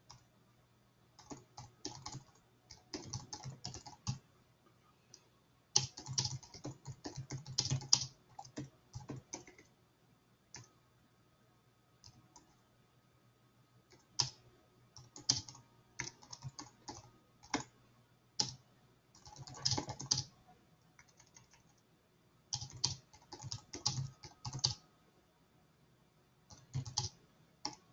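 Typing on a computer keyboard: quick runs of key clicks in bursts of a few seconds, broken by short pauses, with a faint steady low hum underneath.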